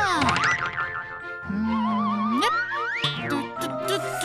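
Cartoon sound effects over children's background music: tones that swoop down and up in pitch, a wavering tone in the middle, and quick rising sweeps about three seconds in, followed by a run of rising notes near the end.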